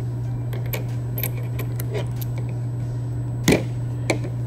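Light metallic clicks of steel screwdriver bits and nut-driver sleeves from a Husky 15-in-1 screwdriver being handled, fitted together and set down on a hard countertop, with one louder click about three and a half seconds in. A steady low hum runs underneath.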